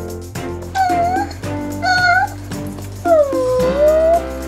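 Three pitched creature calls voicing toy figures squaring off, over steady background music. The third call is the longest, dipping and then rising in pitch.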